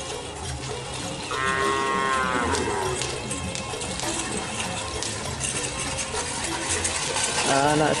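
Cattle mooing: one long call beginning about a second in that falls in pitch as it ends, and a shorter wavering call near the end, over scattered clattering.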